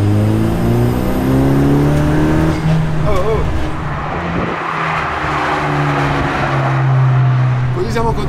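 Dallara Stradale's turbocharged four-cylinder engine pulling hard at full throttle, its note rising in pitch, breaking off briefly about two and a half seconds in as it changes gear, then pulling again.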